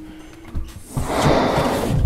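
A cinematic whoosh sound effect: a noisy swell that builds over the last second and runs into a deep boom, over tense background music, with a soft knock about half a second in.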